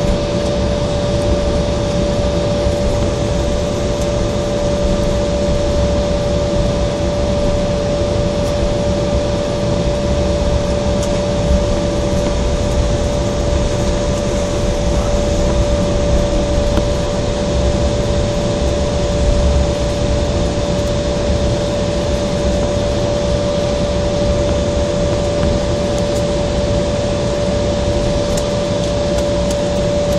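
Cabin noise of an Embraer 170 taxiing at idle power: a steady rush with a low rumble and a constant whine.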